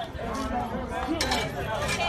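Several people talking indistinctly, with two short, sharp clinks partway through and near the end.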